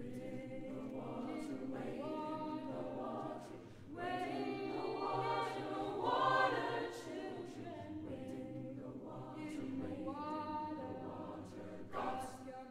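High school choir singing long held chords that swell, loudest about six seconds in, then ease off.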